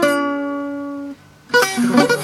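Acoustic guitar playing a diminished seventh arpeggio: a plucked note rings and fades, stops about a second in, and half a second later a quick run of single notes starts.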